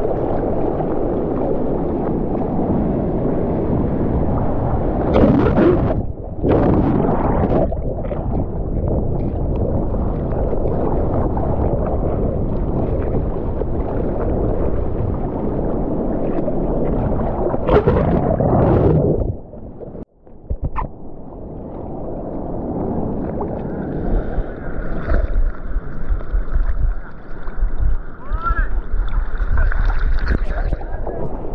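Seawater rushing and splashing against a bodyboard-mounted camera as the rider paddles through the surf, with heavier surges of whitewater about five seconds in and again around eighteen seconds. The sound cuts out abruptly for a moment near twenty seconds, then returns as lighter, choppier splashing.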